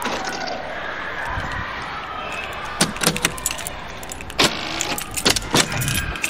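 The central locking on a converted ambulance's body door works: a few clicks about three seconds in, then one loud thunk about four and a half seconds in, the sound of its cheap generic lock solenoids. A quick run of latch clicks and jangling keys follows as the door is opened, over steady background noise.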